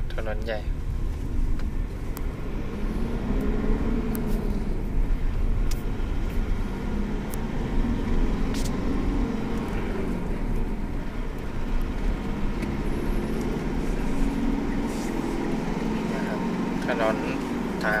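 Car engine and road rumble heard from inside the cabin while driving slowly on a dirt road. The engine note rises and falls several times, with a few light clicks.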